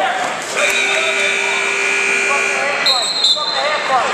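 A gymnasium scoreboard buzzer sounds steadily for about two seconds, followed by a short, higher tone about three seconds in.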